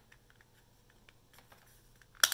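Near silence with a few faint plastic clicks as the two halves of an earbud charging case are pressed together around a replacement battery.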